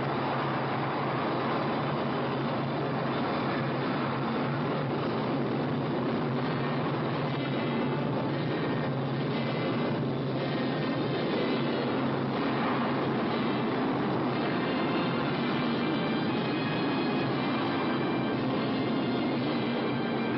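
Spaceship rocket engine sound effect, a steady loud rushing noise with a low hum that holds throughout as the craft descends to land.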